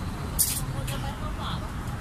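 Steady low rumble of street traffic with faint voices in the background, and a short sharp hiss about half a second in.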